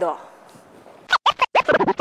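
DJ-style record scratching: a quick run of short back-and-forth sweeping strokes starting about a second in.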